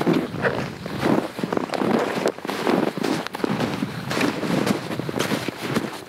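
Boots crunching on packed snow: irregular footsteps, a crisp crunch every half second or so.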